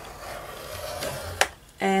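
Ball-tipped stylus drawn along the groove of a scoring board, scoring a fold line into cardboard with a soft scrape, then a single sharp click about one and a half seconds in.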